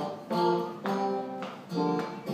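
Electric guitar with a clean tone strumming chords: three chords struck in two seconds, each left to ring and fade.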